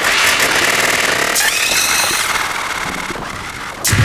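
Live electronic music from a Eurorack modular synthesizer rig: harsh, noisy synthesized textures that hit suddenly at the start and fade gradually over the next few seconds. A new hit just before the end brings a deep bass.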